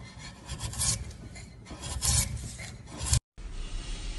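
A steel hand blade shaving across a wooden block in three scraping strokes, the last ending in a sharp scrape that cuts off suddenly. A softer steady hiss follows near the end.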